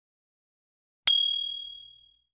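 A single bright notification 'ding' sound effect about a second in: one clear high ring that starts sharply and fades out over about a second.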